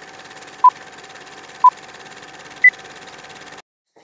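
Old film-leader countdown sound effect: a steady projector-like rattling hiss with a short beep once a second, two beeps and then a higher-pitched third. The rattle cuts off suddenly about three and a half seconds in.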